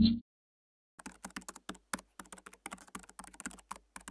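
The loud end of a rising tone cuts off just after the start. About a second in, a rapid, irregular run of computer-keyboard typing clicks begins: a typing sound effect that keeps pace with on-screen text being typed out letter by letter.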